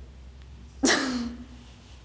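A young woman gives one short, breathy burst of laughter about a second in, trailing off.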